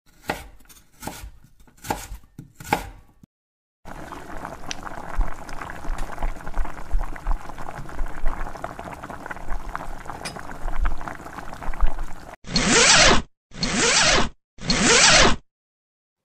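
Kitchen cooking sounds: a knife chopping on a board, about five knocks over the first three seconds, then a long stretch of scraping and small clatter of utensils on pots. Near the end come three separate bursts of about a second each.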